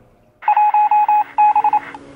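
A quick run of short electronic beeps on one steady pitch, some longer and some shorter, with a brief break partway through. They last about a second and a half and stop just before the end.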